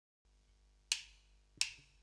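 A drummer's count-in: two sharp drumstick clicks, about 0.7 s apart, over a faint steady amplifier hum.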